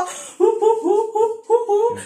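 Laughter: a quick run of short, high-pitched 'ha' bursts, about six a second, starting about half a second in.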